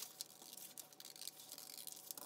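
Scissors cutting through a folded sheet of paper along a crease line: a series of faint, crisp snips with light paper rustling.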